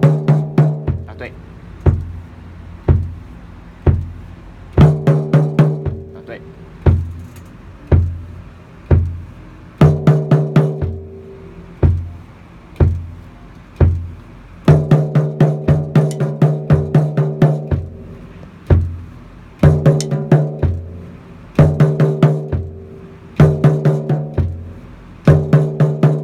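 A drum kit played solo: single bass-drum beats about once a second, broken every few seconds by quick fills of snare and tom strokes, the toms ringing after each fill.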